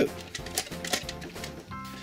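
Light background music over a run of quick small plastic clicks from the toy camper van's awning mechanism, its little gears ticking as the awning slides out.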